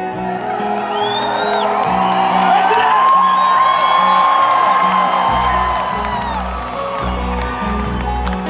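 Crowd cheering and whooping over a live acoustic band (banjo, acoustic guitar, cello, upright bass), heard from among the audience. The cheering swells through the middle, with high whoops and whistles, and a low bass part comes in about five seconds in.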